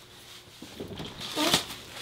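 Soft rustling of clothing and a disposable diaper being handled on a changing table, with small clicks. A short voice sound comes about one and a half seconds in, close to a sharp click.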